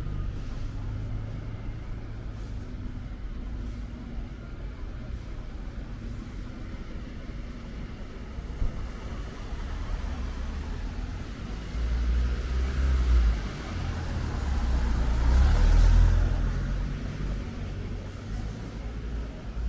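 A car drives past close by over a steady low rumble of street traffic. Its engine and tyre noise swells twice in the second half and is loudest about two-thirds of the way in.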